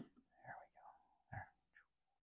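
Near silence, with a faint murmur and one softly spoken word about a second in.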